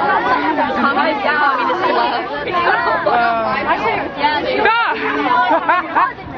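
A group of people chattering at close range, several voices talking over one another without a break so that no single speaker stands out.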